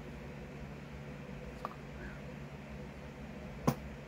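Low steady room hum as fine protein powder is tipped from a plastic scoop into a plastic shaker cup, with a faint click about a second and a half in and a single sharp tap near the end.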